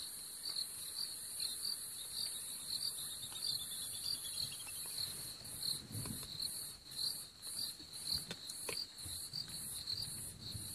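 Night insects, crickets among them, chirping steadily: a high continuous trill with an even chirp about two to three times a second. A few soft low crunches and sharp clicks come in the second half, from the leopard feeding on the impala carcass.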